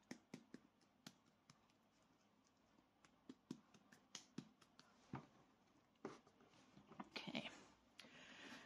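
Faint, irregular soft pats and taps of hands working a hollow clay ball, patting and turning it between the palms to round it.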